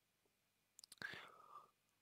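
Near silence between spoken phrases, with a couple of faint mouth clicks and a short, faint breath about halfway through.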